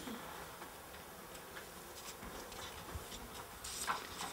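Faint rustling and small clicks of loose paper sheets being handled and turned over, with a louder rustle near the end.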